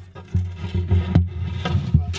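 Phone scraping and rubbing against the wooden bracing inside the body of a 1969 Martin D-45 acoustic guitar, with several sharp knocks as it bumps the braces.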